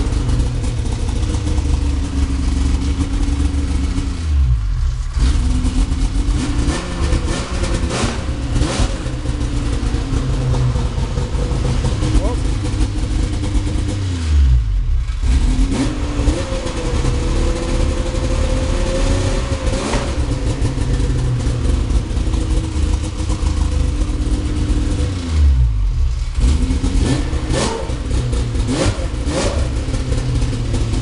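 A snowmobile's 800 cc three-cylinder two-stroke engine running steadily in an enclosed garage. Three times, about ten seconds apart, its revs dip briefly and recover. It is set rich and running well.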